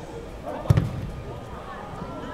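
A football struck hard in a shot on goal: one sharp thump less than a second in.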